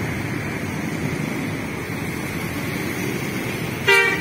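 A coach's diesel engine running as the bus pulls out and approaches, under steady road-traffic noise. A short loud horn toot comes right at the end.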